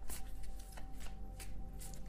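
A tarot deck being shuffled by hand: a quick, irregular run of soft card clicks and flicks.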